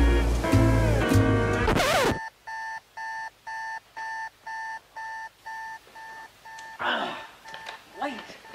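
An electronic alarm clock beeping in even, evenly spaced pulses, about two a second, for around four and a half seconds, then cut off with a short rustle. Before it, music ends about two seconds in with a quick rising sweep.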